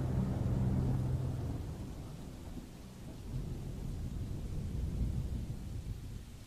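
Deep thunder-like rumble that fades, swells again about three seconds in, and dies away near the end.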